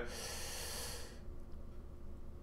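A man's audible breath, a hissing intake through the nose lasting about a second, followed by faint steady low room hum.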